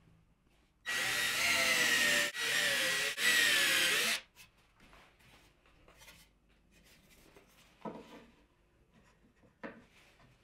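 Cordless drill with a thin twist bit drilling into a wooden block. It runs for about three seconds, starting about a second in, with two brief breaks; the motor whine wavers and sags a little under load.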